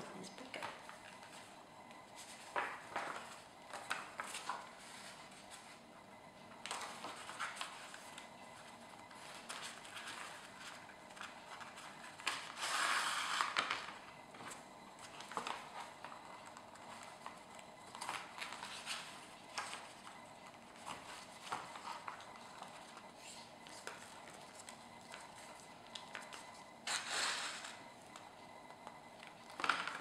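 Paper pages of a hand-sewn notebook rustling and shifting as the signatures are handled and linen thread is drawn through the sewing holes: a string of short, soft rustles, the longest a little under halfway through.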